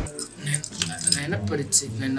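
A person talking, with light metallic jingling in short bursts several times.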